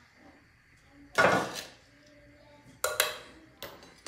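A metal spoon clinking against a glass sugar jar and the bowl as sugar is spooned in. There are two main clinks, about a second in and near three seconds in.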